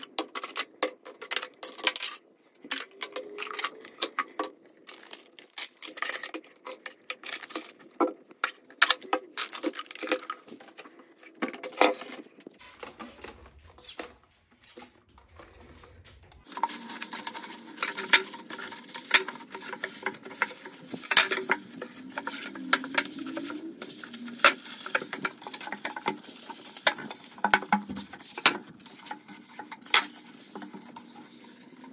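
Plastic and glass toiletry jars and bottles being picked up and set down on a wooden cabinet shelf, a quick run of clicks and knocks. After a quieter spell about halfway, a trigger spray bottle and a cloth rubbing over the shelves, with more light knocks.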